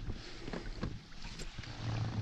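Water lapping and slapping against the hull tubes of an inflatable rubber dinghy, in several short splashes over a low rumble.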